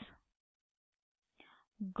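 Mostly near silence between spoken phrases: a breathy word ending at the very start, a short faint breath about a second and a half in, and speech resuming just before the end.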